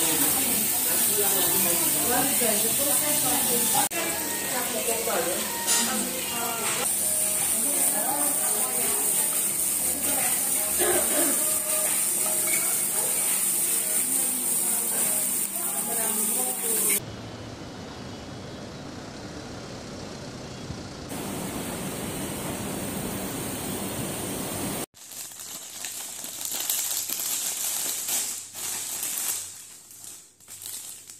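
Meat sizzling on a tabletop barbecue grill, a steady hiss under the chatter of voices. The voices stop about 17 seconds in and a quieter hiss carries on. Near the end comes the crinkling of the plastic wrapping on an ice-ball tray being handled.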